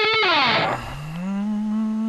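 Distorted electric guitar note held, then sliding down in pitch and dying away within the first second. A lower note then glides up and holds steady.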